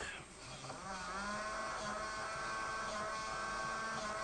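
Small electric motor of a USB hamster-wheel toy whining as it drives the wheel. It rises in pitch about a second in as it comes up to speed, then runs steadily.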